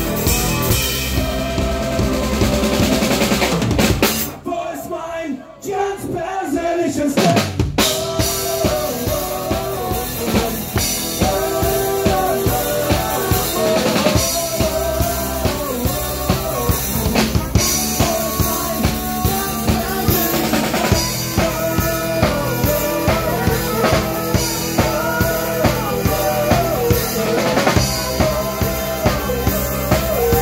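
A live band playing an upbeat song with a steady drum-kit beat, electric guitar and accordion. The music thins out about four seconds in and the full band comes back in about three seconds later.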